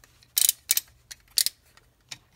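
Sharp plastic clicks from a transforming robot toy's hip joint as its leg is swung up and back: a cluster, a single click, then a quick double.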